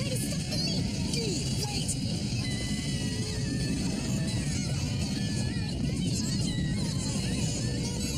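Dramatic cartoon background music over a continuous low rumble, the sound of the ground tremors shaking the city.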